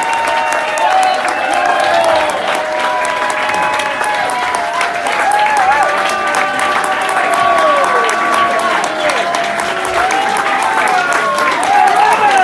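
Audience applauding, with many voices cheering and talking over the clapping.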